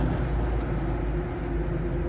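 A car driving at a steady pace, its engine and tyre noise heard from inside the cabin as a steady low drone with a faint hum.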